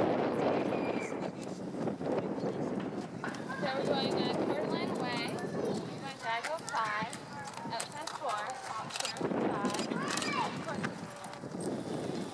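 Hoofbeats of a horse cantering on a sand arena, with people's voices talking in the background.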